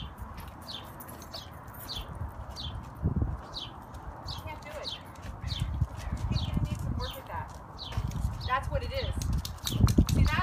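A bird chirping over and over, a short falling chirp a little more often than once a second, over low rumbling noise. Voices talk in the second half.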